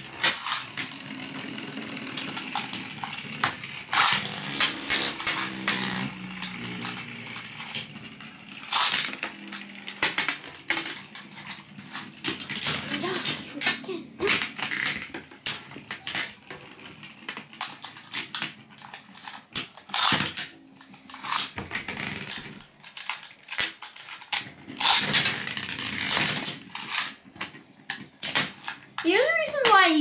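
Several Beyblade spinning tops whirring on a plastic tray and clashing: repeated sharp clacks as the tops strike each other and the tray's rim, coming in bursts of rapid hits.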